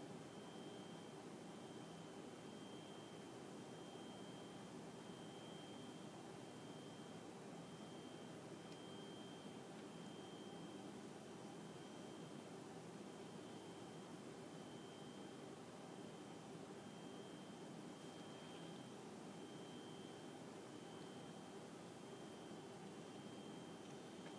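Near silence: steady low hiss of room and recording noise, with a faint, steady high-pitched whine.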